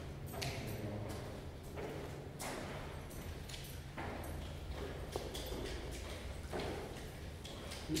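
Ambience of a stone-vaulted crypt: scattered footsteps and small knocks on the stone floor, faint murmured voices, and a steady low hum underneath.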